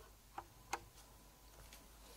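Near silence with two short, sharp clicks, about a third and three quarters of a second in, and a couple of fainter ticks later.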